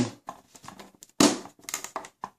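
Hand handling the plastic hatch cover and latch knob of an RC boat hull: light rubbing and small clicks, with one louder sharp knock about a second in.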